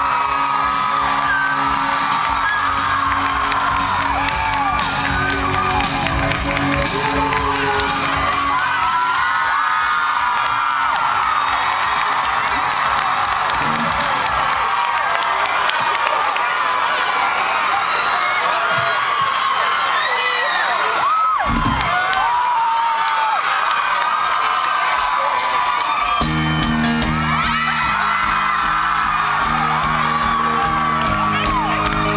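Live rock concert crowd cheering and whooping between songs, many voices rising and falling in short cries over held notes from the band. About four seconds before the end, the band starts playing again with full low chords.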